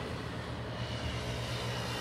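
Steady low engine drone of distant motor traffic.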